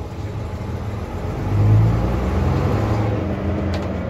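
Gardner six-cylinder diesel of a 1982 Bristol RELL6G single-deck bus, heard from inside the saloon as the bus drives along. The engine note swells and rises about a second and a half in as it pulls, then runs on steadily under load.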